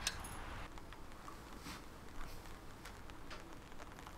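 Quiet outdoor background with a faint low hum and a few soft, scattered clicks.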